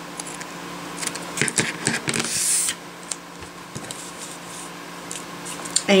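Scissors snipping paper to trim off the excess: a few quick, sharp snips about a second in, followed by a short rustle of paper, then a few faint clicks, with a faint steady hum underneath.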